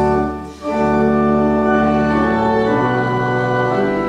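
Church organ playing a hymn in held chords, with a short break about half a second in before the chords resume and change.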